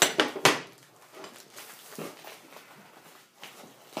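Hands rummaging through a long cardboard shipping box and its packing, with a few sharp knocks in the first half second, then softer rustles and small knocks.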